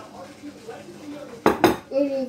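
A ceramic plate set down on a table, with two sharp knocks in quick succession near the end, and the fork on it clinking.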